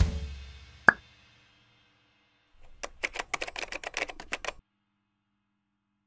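The end of a drum-kit intro music piece dying away, with one sharp hit about a second in. After a short silence comes a quick, irregular run of a dozen or so sharp clicks lasting about two seconds, which stops suddenly.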